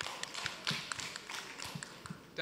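Scattered light taps and clicks, a few per second, over a faint steady hiss.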